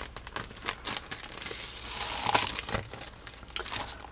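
Thin clear plastic bag crinkling and crackling as a paper catalogue is worked back into it, the crackle busiest around the middle.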